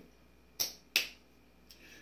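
Two short, sharp clicks, about half a second apart, over faint room tone.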